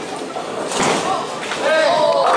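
Bowling alley noise as a just-released bowling ball rolls down the lane toward the pins, with a knock about three quarters of a second in and people's voices near the end.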